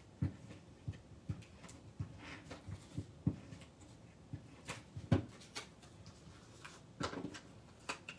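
Cardstock being handled: light rustling with soft taps and clicks as a paper liner is fitted into the bottom of a paper treat box, the loudest tap about five seconds in.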